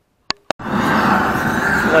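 Steady hiss of a compressed-air blast gun cleaning a tractor's front axle beam, starting about half a second in after two short clicks.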